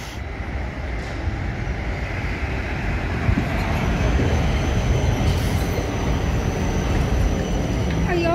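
Low-floor city tram approaching and passing close by on street rails. Its rumble builds over the first few seconds, then holds steady as the cars roll past. A thin, steady high whine joins about halfway through.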